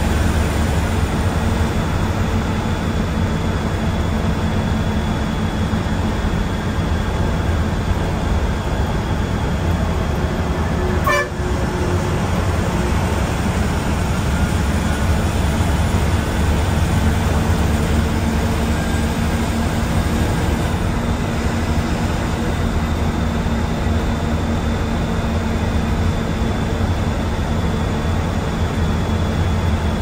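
Steady, even drone of a bus's engine and tyres on the highway, heard from inside the cabin, with a single brief knock about eleven seconds in.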